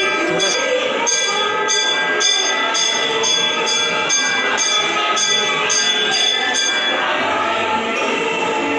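A metal temple bell struck over and over, about two strokes a second, its ringing tones hanging on between strokes and stopping about a second before the end. A crowd's voices run underneath.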